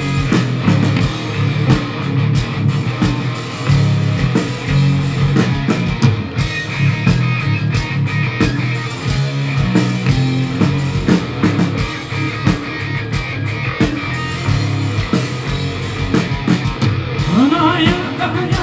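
Heavy metal band playing live through a PA: electric guitars, bass and drum kit, heard from the crowd.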